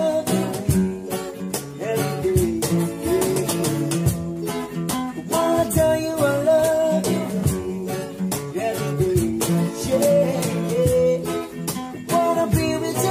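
Background music: a song with a singing voice over plucked and strummed guitar.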